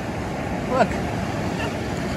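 Steady rush of wind and surf noise, with no distinct events in it.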